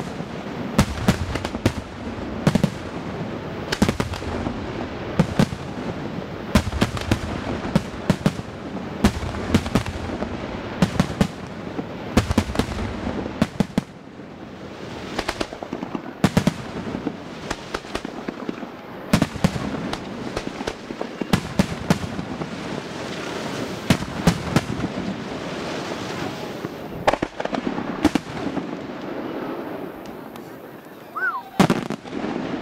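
Aerial firework shells bursting in quick succession: many sharp bangs over a continuous crackle and rumble, easing briefly about halfway through and dying down near the end.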